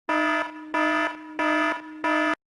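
Electronic alarm beeping: three evenly spaced buzzy beeps, each about a third of a second long, repeating about one and a half times a second.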